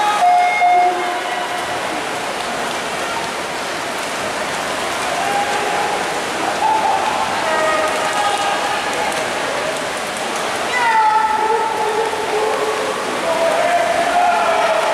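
Steady wash of splashing from racing swimmers mixed with the noise of a crowd at a swim meet, with spectators yelling now and then; the loudest shout comes about eleven seconds in.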